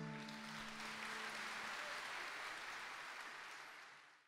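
The ensemble's last held notes ringing out and dying away, then audience applause that fades out near the end.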